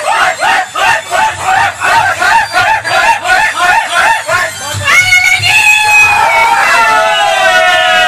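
A man singing loudly into a handheld microphone, amplified: a run of short rising notes, about three a second, then a long high held note that slides down near the end.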